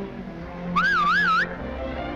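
Dance band music plays on. Partway through, a loud warbling whistle sounds for under a second, wavering up and down as it climbs in pitch, then cuts off.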